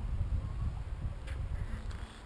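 Low, uneven rumble of wind buffeting the camera's microphone.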